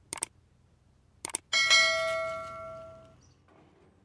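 YouTube subscribe-button animation sound effect: mouse clicks near the start and again about a second in, then a notification bell dings and rings out for about a second and a half.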